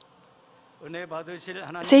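Quiet room tone for under a second, then a voice starts speaking about a second in, growing louder toward the end, announcing the Bible reading.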